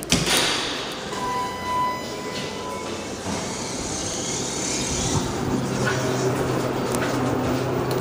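ThyssenKrupp Synergy hydraulic elevator: a short beep a little over a second in and the doors sliding, then from about five seconds in a steady low hum as the hydraulic power unit runs and the car moves.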